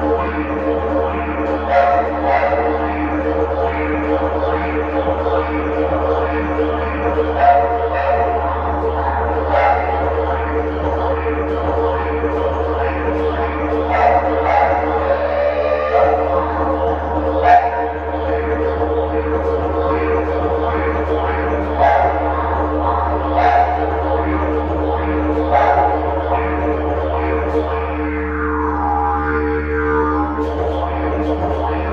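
Didgeridoo drone played continuously, with sharp rhythmic accents about once a second over the held low tone and a gliding vocal call blown through the pipe near the end, echoing in an empty room.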